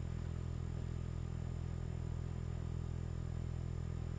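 A steady low-pitched hum, even in level, with no breaks or separate sounds.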